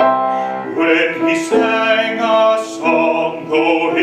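A man singing in a classical, operatic style with piano accompaniment.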